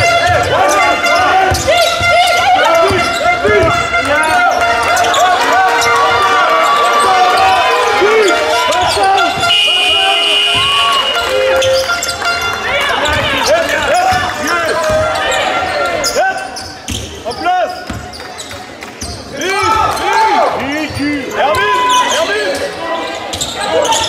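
Basketball game on a hardwood gym court: sneakers squeaking over and over, the ball bouncing, and voices calling out from players and the crowd. It goes a little quieter for a couple of seconds past the middle.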